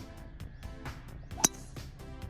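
Background music with a beat, and about one and a half seconds in a single sharp crack, far louder than the music: a driver striking a golf ball.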